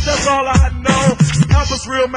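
A male rapper's voice over a hip hop beat, with deep kick drums that drop in pitch, plus snare and hi-hats.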